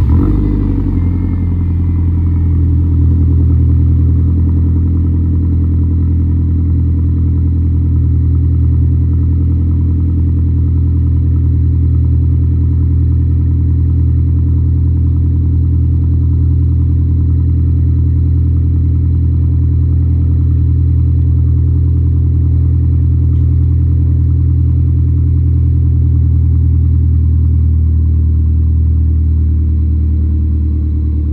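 MINI Cooper S Countryman's N18 1.6-litre turbocharged four-cylinder engine starting up with a brief flare, then idling steadily. This is the first run after fitting the RPM Powered R400 big turbo kit, checking that everything works.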